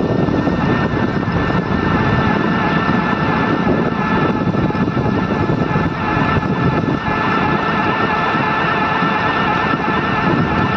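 Wind rushing over the microphone with road noise from a rickshaw riding along a paved road, steady throughout, with a few faint steady high tones under it.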